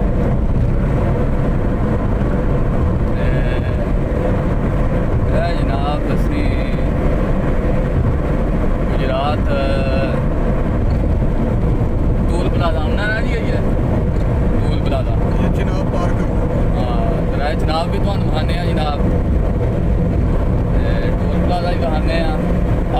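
Steady low road and engine rumble inside a moving car's cabin, heard over intermittent voices.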